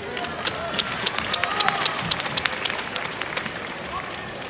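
Scattered hand clapping from spectators: a rapid, irregular run of sharp claps that thickens in the middle and thins out near the end, over a murmur of crowd voices.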